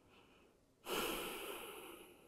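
A person's long audible exhale while holding a yoga pose: it starts suddenly about a second in and fades away gradually.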